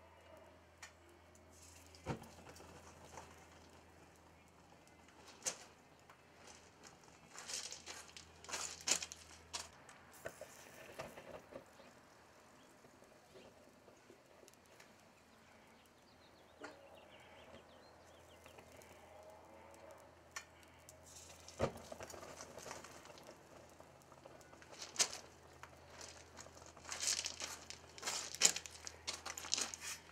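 Faint, scattered crackling and popping as molten aluminum burns out a styrofoam lost-foam pattern buried in sand, with louder clusters of crackles about a third of the way in and near the end.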